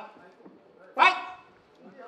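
A single short shout from a person's voice about a second in, over faint arena background noise.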